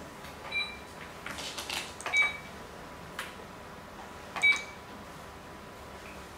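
Go stones clicking against a wooden board and rattling in a wooden bowl: sharp clicks with a brief ring, about half a second, two seconds and four and a half seconds in, the last the loudest, with a short clatter of stones between the first two.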